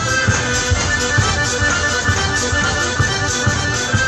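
Live traditional folk dance music from a small band, with held melody notes over a tambourine and a steady beat of about two and a half beats a second.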